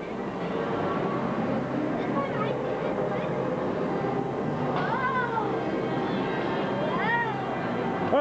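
Din of a busy indoor play area: a steady wash of many children's voices, with a child's high call rising and falling about five seconds in and again a couple of seconds later.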